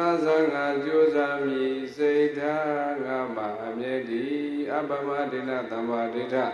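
A Burmese Buddhist monk chanting in a melodic male voice into a handheld microphone, holding long, slowly wavering notes, with a short pause for breath about two seconds in.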